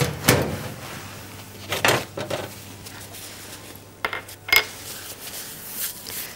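Kitchen bowls and utensils being handled: scattered clinks and knocks, the loudest just after the start, with more around 2 s and between 4 and 4.5 s.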